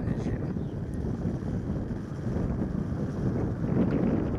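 Wind buffeting the microphone over a steady low rumble.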